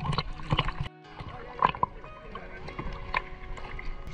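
Seawater sloshing and splashing against a camera held at the surface in choppy water, in irregular short splashes, with soft background music underneath.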